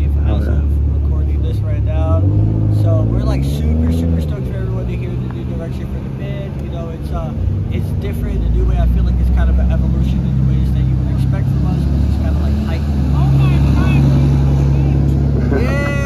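A motor vehicle's engine running close by, a low steady rumble under a man talking; about two to four seconds in its pitch rises and falls back, and it grows stronger from about eight seconds in.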